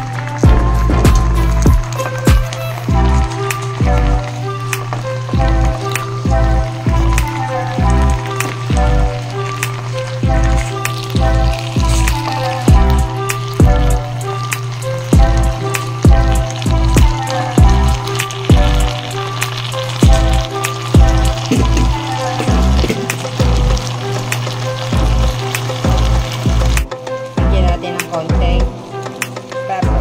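Background music with a steady bass beat over the sizzle of water spinach (kangkong) and sliced hotdogs stir-frying in a pan as a spatula stirs them. The sizzling grows stronger after about ten seconds.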